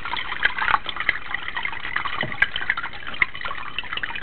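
Green AP-tank etching solution poured from a bucket into a paper coffee filter in a filter basket, splashing and trickling with small drips.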